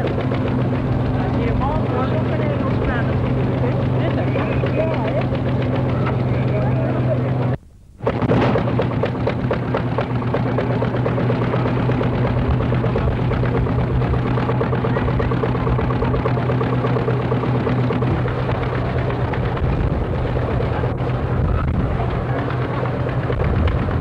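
A steady mechanical hum under constant crackle and a wash of voices. It drops out briefly about eight seconds in.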